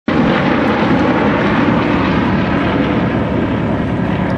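A formation of Yak-52 aerobatic trainers flying overhead together, their nine-cylinder radial engines and propellers making a steady, loud drone.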